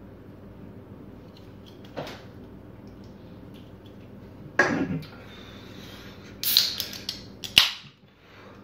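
An aluminium Coca-Cola can being opened: sharp clicks of the pull tab and a short fizzy burst in the last two seconds. A single loud thump comes about halfway through.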